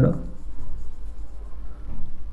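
Marker pen writing on a whiteboard, its strokes faint against a low steady hum.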